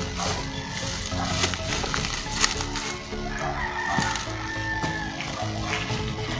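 A rooster crowing about halfway through, over steady background music, with a sharp click about two and a half seconds in.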